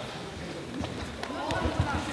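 Bare feet of two karate fighters stepping and thumping on the sports-hall floor, with background voices of onlookers, louder in the second half.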